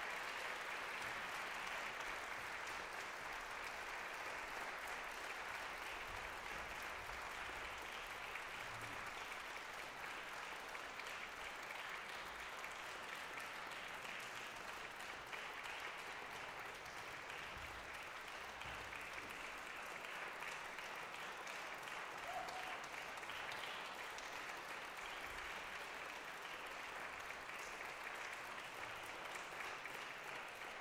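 Concert hall audience applauding, a steady, even clapping that slowly dies away.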